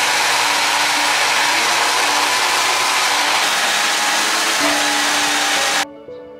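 Corded electric chainsaw cutting through a log, a loud, steady whine of motor and chain in the wood that cuts off suddenly near the end.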